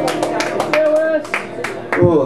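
A small audience clapping as the last notes of a dobro (resonator guitar) ring out and fade, with a short voiced call about a second in.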